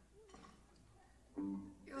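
A short hush of concert-hall room tone, then a woman's voice starts talking again about a second and a half in.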